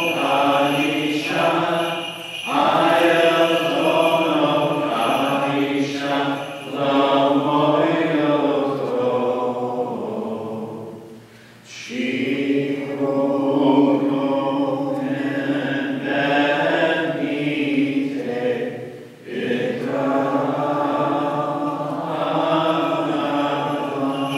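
Liturgical chant of the Maronite rite, sung in long held phrases. There is a break for breath about halfway through and a shorter one about three-quarters of the way in.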